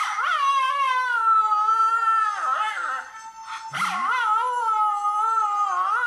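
Jack Russell Terrier howling along with a phone playing back its own howl, the two voices overlapping. Two long, wavering howls: the first sags and fades about two and a half seconds in, and the second rises again about four seconds in and holds.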